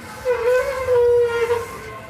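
A single loud horn blast that rises briefly and then holds one steady pitch for just over a second before stopping.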